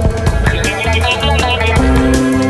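Alternative rock song in an instrumental stretch between sung lines: guitar, bass guitar and drum kit playing at a steady beat.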